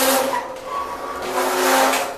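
Cockatiel hissing while held cupped in a hand over its head, in two long hisses: the defensive hiss of a bird that does not want to be handled.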